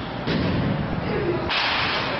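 Baseball bats striking balls in an indoor batting cage: a short, sharp crack about a quarter second in, then a sudden rush of hiss from about a second and a half in.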